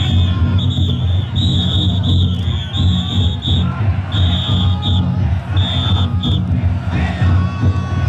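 Big taiko drums beaten inside several taikodai festival drum floats, pounding in a dense, continuous rhythm. Short, shrill whistle blasts repeat over it until a little after six seconds in, with a crowd shouting throughout.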